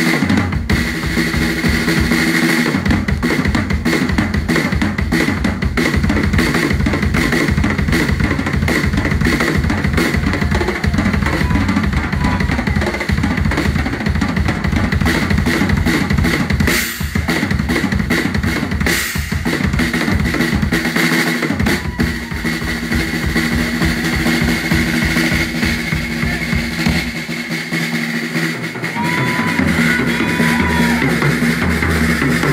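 Live rock drum kit played hard in a busy passage of rapid snare, tom and bass-drum hits. Two loud cymbal crashes come about two seconds apart just past the middle. Held notes from the rest of the band sound under the drums at the start and again near the end.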